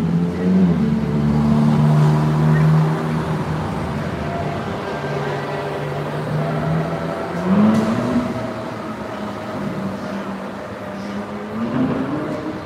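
Vehicle engine running on a city street, a steady hum that revs up in pitch about three quarters of the way through and again near the end.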